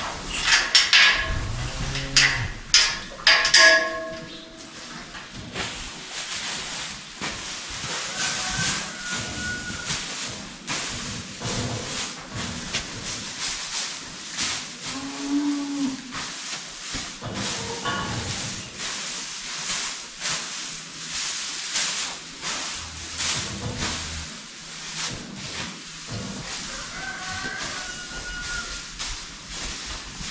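Holstein heifers mooing several times, a cluster of calls in the first few seconds and another about halfway through, over the repeated rustle and scrape of straw bedding being forked.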